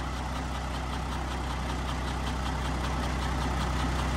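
Isuzu 6WF1 inline-six diesel engine idling steadily on a test stand, a little louder toward the end.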